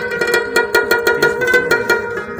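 Rabab playing a quick plucked melody, with a clay-pot (mangay) drum struck in a steady rhythm of about four strokes a second.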